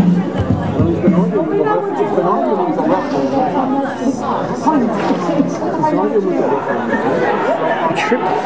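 Several voices talking and calling out over one another: spectator chatter, with no single voice standing out clearly.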